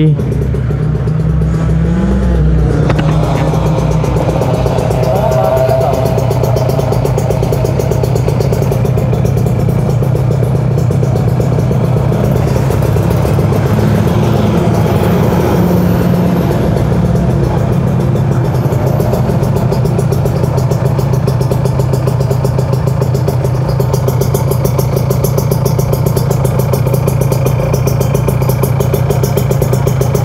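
Kawasaki Ninja RR 150 two-stroke motorcycle engines idling steadily close by, a group of bikes running at once.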